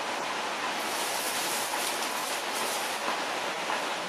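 Steady rushing hiss of outdoor background noise in a leafy forest, with no distinct events; it grows slightly brighter through the middle.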